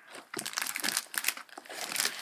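Clear plastic bag crinkling and rustling as rolls of duct tape are pulled out of it and handled: irregular crackles that start about a third of a second in.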